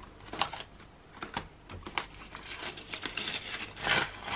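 Small plastic and metal clicks as a cash binder's zip pouch is handled, ending in a louder clatter of £1 coins tipped out and landing together near the end.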